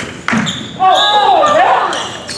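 Indoor basketball game sounds in a reverberant gym: a basketball bounces on the hardwood, then a raised voice calls out for about a second.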